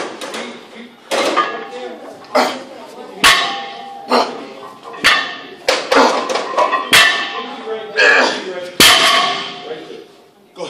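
A 405 lb barbell loaded with metal plates being deadlifted for repeated reps: the plates clank and the bar knocks down on the gym floor again and again, with heavy thuds about every two seconds and the last one near the end.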